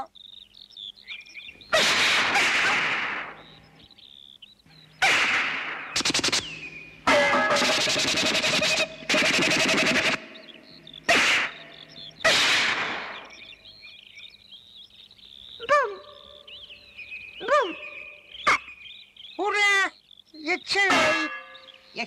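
Cartoon sound effects: a string of loud, noisy crashing and clanging bursts, some with a ringing tone, followed in the second half by a few short squeaky calls that glide up and down in pitch.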